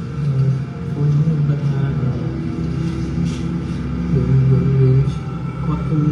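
Steady low rumble of a running vehicle, holding at an even level with no sharp knocks or bangs.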